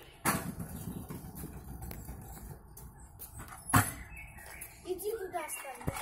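Stunt scooter wheels rumbling over paving stones, with two sharp thumps of the scooter landing small hops. The second, about three and a half seconds in, is the louder.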